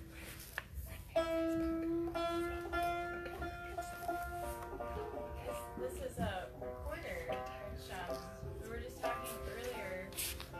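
Live acoustic folk duet: a recorder holds a long note and then moves through a short melody, with a fiddle playing along.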